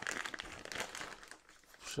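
Clear plastic zip-lock bag crinkling and rustling in irregular bursts as it is handled.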